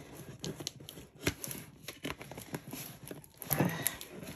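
Scissors cutting through a taped cardboard shipping box: irregular snips and crackles of cardboard and packing tape, with crinkling as the box is handled.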